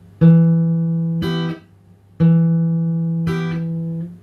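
Steel-string acoustic guitar fingerpicked slowly on a D minor chord. A low note rings out, and about a second later a higher cluster of strings is plucked together and then damped short. The pattern comes twice.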